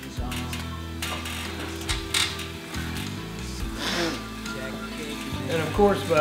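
Stationary exercise bike being pedalled: a steady low whir from the flywheel and drive, with scattered mechanical clicks.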